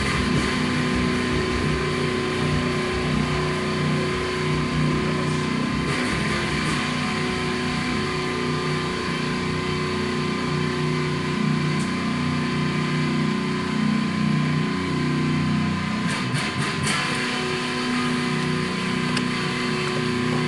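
Heavily distorted electric guitar, a Jackson JS30RR played through a Bugera 333 valve amp head, chugging out metal riffs in a steady, dense wall of sound.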